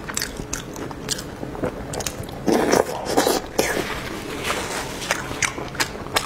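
Close-miked wet chewing and mouth smacks of soft pig brain in spicy chili oil, a quick run of short sharp clicks, louder and denser about halfway through.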